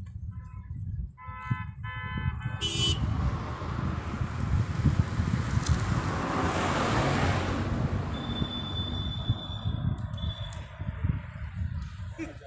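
A vehicle horn sounding in quick repeated beeps, then a vehicle passing on the road, its noise swelling and fading. Wind rumbles on the microphone throughout.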